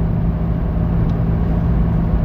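Steady low rumble and hum of a car heard from inside its cabin, even throughout with no sudden events.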